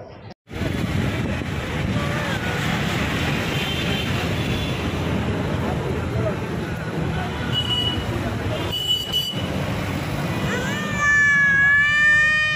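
Steady traffic and road noise heard from inside a car. Near the end a young child's high voice comes in.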